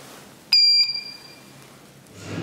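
ManKan elevator landing call button giving a single short, high electronic beep about half a second in. The beep sounds loudly for about a third of a second, then fades. It acknowledges the call as the button lights up.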